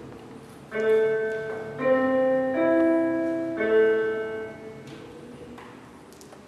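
Four piano notes played one after another, each held about a second and overlapping the last, the first and last highest and the second lowest: starting pitches given to an a cappella vocal octet before they sing.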